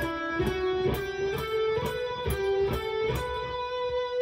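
Electric guitar playing a slow single-note lick, alternate-picked at about two notes a second, the line climbing in pitch and then settling on one note left ringing through the last second or two.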